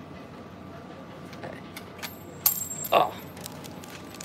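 A 500-yen coin dropped onto the pavement: a sharp metallic clink about two and a half seconds in, followed by a brief high ringing.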